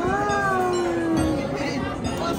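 A person's long drawn-out vocal note, held for over a second and sagging slightly in pitch, over the chatter and noise of a busy restaurant dining room.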